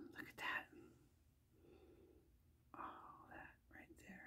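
Near silence, broken by a couple of faint breathy whispers from a woman, one just after the start and one about three seconds in.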